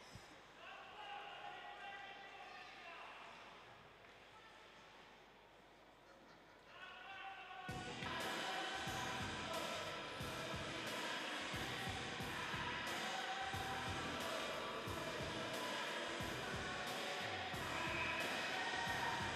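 Music over an arena's public-address system during a stoppage in play: faint at first, then louder from about eight seconds in, with a steady beat.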